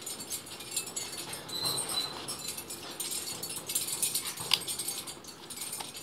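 Paper pages of a paperback manga volume being turned and handled, a dense crisp rustling and crackling of paper. A brief thin high tone sounds about one and a half seconds in, and a sharper snap of paper comes a little past the middle.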